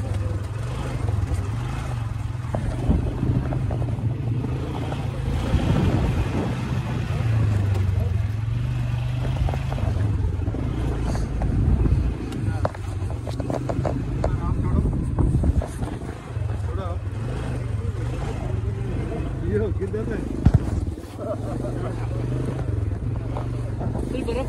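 Engine of a small ride-on vehicle running steadily under load over a rough track, its low note rising and falling with the throttle.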